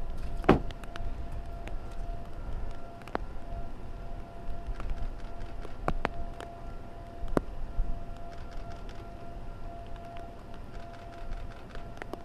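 A distant outdoor tornado warning siren holding one steady pitch, swelling and fading slightly, over low wind rumble on the microphone. Scattered sharp taps sound throughout; the loudest is a knock about half a second in.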